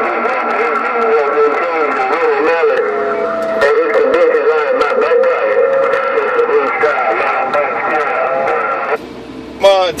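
Garbled, unintelligible voice of a long-distance station coming through the speaker of a President HR2510 radio tuned to 27.085 MHz. The audio is narrow and tinny, with steady whistling tones over it, and cuts off suddenly about nine seconds in as the transmission drops.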